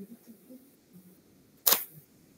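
A single sharp click about one and a half seconds in, standing out against a quiet background with faint low sounds.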